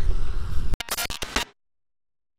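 Handling noise on a handheld camera's microphone as a hand closes over it: a low rumble, then a few sharp knocks and rubs, then the sound cuts off dead about halfway through.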